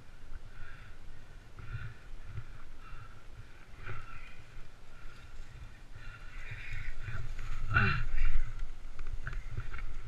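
Low rumble of wind and movement noise on a helmet-mounted camera's microphone, with faint trail noise. A short falling cry, like a distant voice, comes about eight seconds in.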